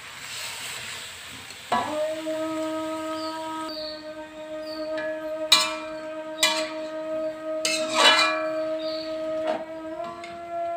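Metal spatula stirring and scraping napa cabbage in an aluminium wok, with a light frying hiss at first and several sharp clinks of the spatula against the wok. From about two seconds in, a steady low tone holds under the stirring.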